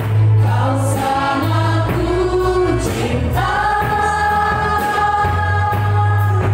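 Contemporary church worship song sung in Indonesian by several singers together, backed by keyboard, drums, bass and guitar over a steady beat. About halfway through the singers hold one long note.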